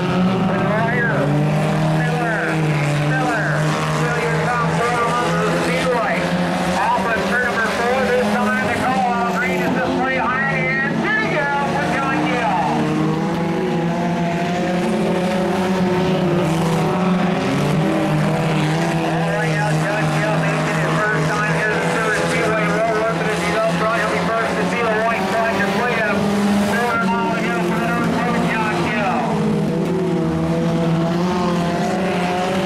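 Several sport compact race cars' four-cylinder engines running hard around a dirt oval, their pitch rising and falling as they accelerate and lift through the turns.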